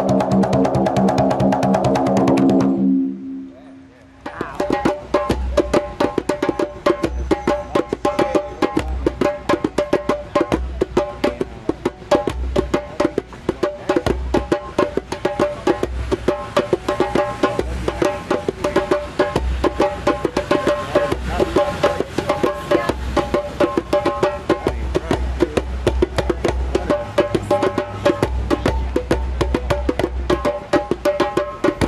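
A large barrel drum rumbling in a sustained roll that stops about three seconds in. After a short gap, a djembe and a second hand drum are played by hand in a fast, steady rhythm, with sharp slaps and recurring deep bass tones.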